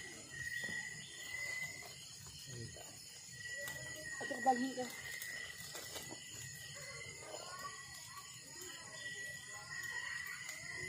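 Steady high-pitched drone of night insects, with the wood fire in the pit crackling now and then and low voices talking at times.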